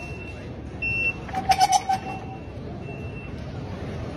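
Station ticket-gate reader giving a short high beep just before a second in, then a brief loud clatter with a pulsing tone as the gate paddles swing open.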